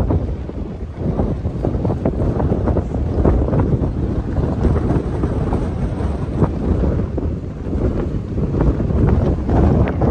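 Strong gusty wind buffeting the microphone ahead of an approaching storm. It is a loud low rumble that rises and falls with the gusts.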